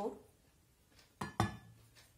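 Stainless steel cup and bowl clinking: two sharp metal knocks in quick succession a little after a second in, the second ringing briefly.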